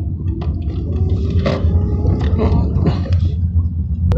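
Car engine and tyre noise heard inside the cabin while driving, a steady low rumble with a few faint clicks.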